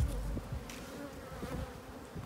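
Honeybees buzzing around an opened hive, a faint steady hum.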